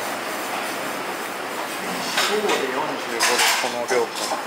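Small restaurant's steady background noise with people talking in the background. In the second half there are a few short noisy bursts.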